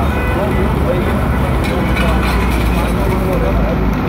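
Loud steady low rumble of outdoor noise, with voices of people calling out in the distance.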